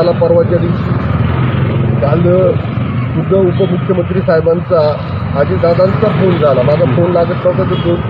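A man speaking Marathi on a busy street, with a steady rumble of road traffic behind his voice.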